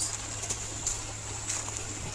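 A steady high-pitched insect trill over a low steady hum, with a few faint clicks.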